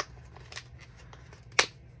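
Small cardboard blind box being opened by hand at its bottom flap: faint paper rustles and light clicks, with one sharper click about one and a half seconds in.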